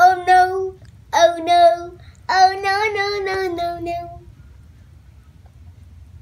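A young girl singing a short wordless tune in three held phrases, stopping about four seconds in.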